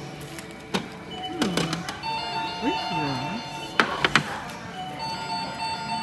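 A tinkly electronic jingle of short chime notes starts about two seconds in, with sharp clinks of dishes around the fourth second and brief voice sounds.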